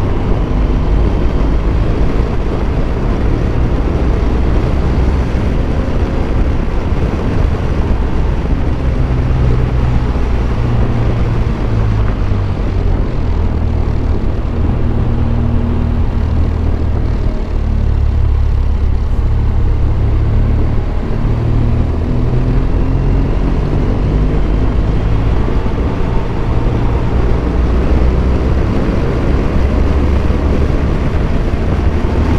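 BMW R1200GS flat-twin engine running at road speed under a heavy, steady low rumble of wind on the microphone, its engine note climbing gently in the second half.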